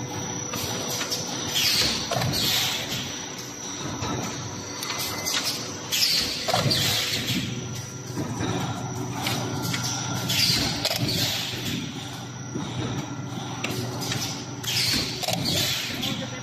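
An automatic plastic lid thermoforming machine running through its forming cycle. A steady machine hum is broken about every four seconds by a pair of short air hisses.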